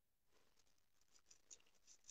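Near silence, with a faint scratchy crackle and a tiny click about one and a half seconds in.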